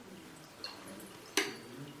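Water poured from a plastic jug into a metal funnel, trickling faintly, with one sharp click about one and a half seconds in.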